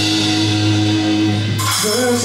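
Live rock band playing: electric guitar and drums, with notes held steady, then a cymbal crash near the end.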